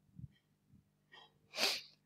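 A man's sharp breath drawn in through the mouth near the end, just before he speaks, after a few faint mouth clicks and soft bumps.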